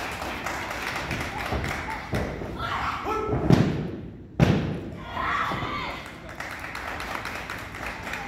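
Thuds and slaps of wrestlers' bodies on a wrestling ring's canvas, mixed with shouting voices. A sharp, loud slap comes a little past halfway as the referee slaps the mat to count a pin.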